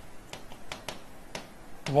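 A pen tapping and clicking on an interactive whiteboard screen while writing: a series of light, irregular clicks.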